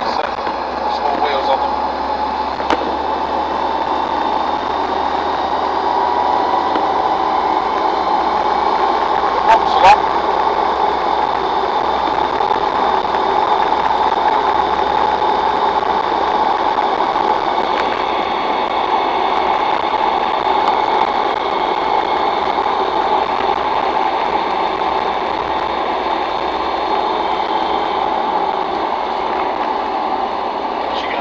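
Land Rover Defender 90 TD5's five-cylinder turbodiesel and road noise heard inside the cab while driving at a steady pace. A single sharp knock comes about ten seconds in.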